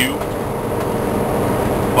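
Steady engine and road noise of a semi-truck on the move, heard from inside its cab.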